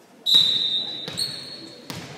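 Referee's whistle blown, a shrill steady blast with a second toot about a second in, authorizing the serve in a volleyball match. Just before the end, a single thud of a ball bounced on the hardwood gym floor.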